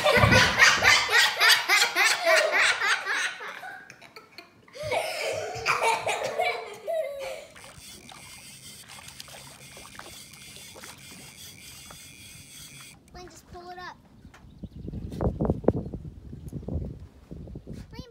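A child laughing hard in rapid pulses for the first few seconds, with more child vocalising a little later. Then a faint steady hiss, and low rumbling gusts near the end.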